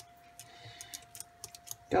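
Faint, scattered clicks and ticks from a plastic water spray bottle being handled and sprayed, over a faint steady hum.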